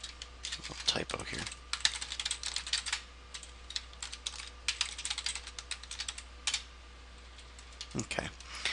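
Typing on a computer keyboard: quick runs of key clicks as a new password is entered and retyped at a Linux terminal prompt. The typing stops about a second and a half before the end.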